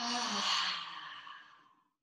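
A woman's long, breathy sigh with a faint voiced tone, fading away over about a second and a half. It is an audible exhale with the effort of an exercise repetition.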